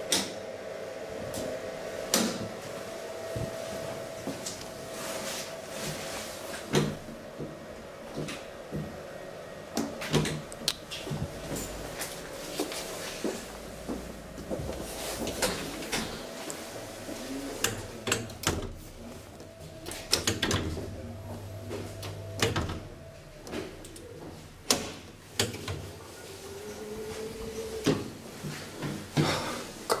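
NAMI Lift platform lift travelling under hold-to-run control: a steady motor hum with scattered clicks and clunks as the platform moves in its enclosed shaft. The hum stops about two-thirds of the way through, and a few more knocks follow.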